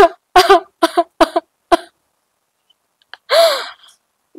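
A woman crying: five short, choked sobs in the first two seconds, then after a pause one longer wailing sob near the end.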